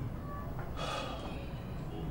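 A man's short, audible breath about a second in, over a low steady background hum.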